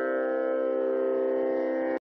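Tanpura drone: a steady chord of sustained, ringing tones with no singing over it, which cuts off suddenly at the end.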